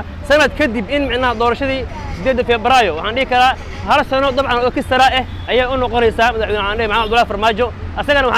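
A man talking to the camera without a break, over a steady low hum of street noise.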